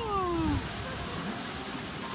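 A voice's long call falling in pitch and trailing off in the first half second, then a steady hiss of splashing pool water as two children slide down a small slide into a shallow splash pool.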